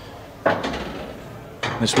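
A sudden hard clack from the pool table about half a second in, fading into a short rattle over roughly a second. A commentator starts speaking near the end.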